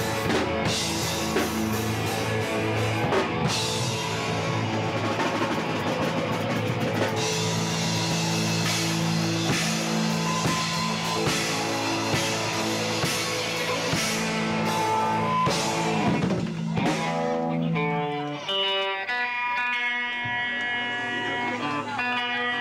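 Rock band playing live, guitars over a drum kit. About 18 seconds in the full band drops out and a single guitar picks out notes on its own.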